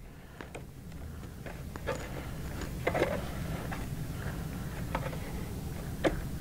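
A few scattered light plastic clicks and taps as an iPad in its case is pressed and seated into a rubbery tabletop holder, over a steady low hum.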